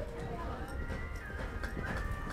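Horse loping on soft arena dirt, with a few faint hoofbeat thuds. High, wavering whistle-like tones glide up and down over them.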